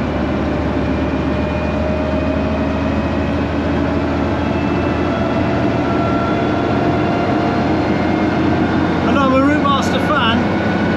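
Bristol VR double-decker bus's Gardner diesel engine, heard from inside the passenger saloon as the bus drives, a steady drone whose pitch slowly rises and eases. A voice briefly cuts in near the end.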